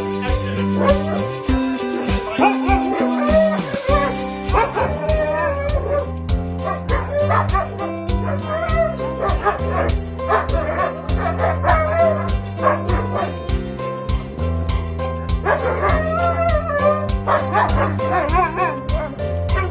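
Background music with a steady beat, over which Alaskan malamutes howl and whine in several bouts, excited at greeting their returning owners.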